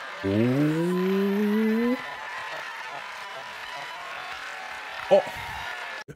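A man's long, drawn-out exclamation "ohhh", rising steadily in pitch for nearly two seconds, then a short loud "oh" about five seconds in, over a low steady background hiss.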